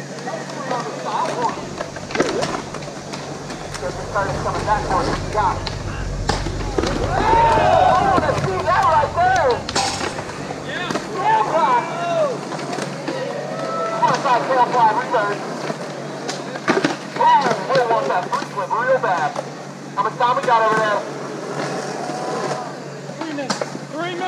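Skateboards rolling and clacking on concrete, with several sharp board impacts, under people talking and calling out across the skatepark.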